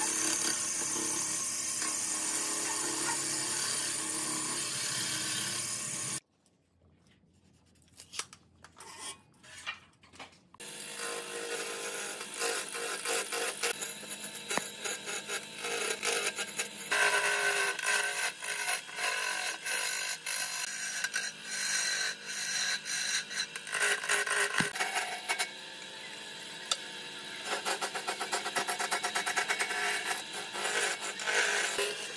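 Wood lathe spinning a large log while a hand-held turning tool cuts into it: a steady scraping, rasping cut with rapid chatter as shavings come off. About six seconds in, the sound drops almost to silence for about four seconds, with only a few faint clicks. The cutting then returns louder and coarser.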